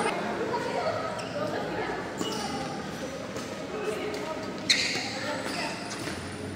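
Badminton rackets hitting a shuttlecock during a rally: sharp cracks, the loudest one late in, echoing in a large sports hall over a background of voices.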